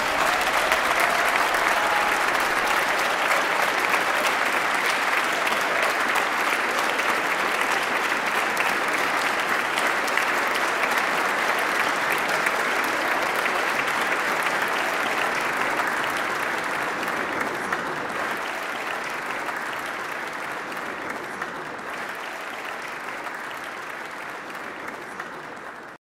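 Large audience applauding, a dense steady clapping that fades away gradually over the last ten seconds.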